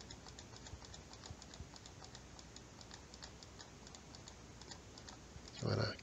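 Faint, irregular clicking at a computer, a few light clicks a second, over low room noise.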